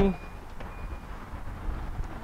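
A man's voice trails off right at the start, leaving a faint low rumble of background noise with a couple of brief, thin, high tones.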